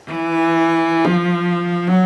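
Cello played with the bow: sustained notes of about a second each, stepping up in pitch as the left hand moves from finger to finger. Each new note carries the vibrato onward.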